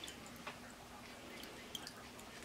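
Faint drips and light ticks from a wet mesh strainer of spherified coffee pearls as it is lifted out of a calcium water bath and drained over a bowl, with one tick about half a second in and a pair near the end.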